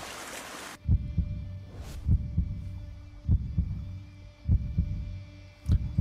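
A short splash of water, then slow, deep booming beats, some in close pairs like a heartbeat, over a faint sustained drone: a dramatic soundtrack.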